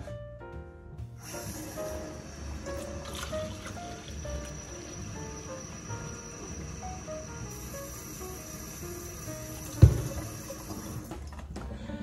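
Kitchen mixer tap running water into a plastic shaker cup, starting about a second in and stopping near the end, under background music. A single sharp knock sounds shortly before the water stops.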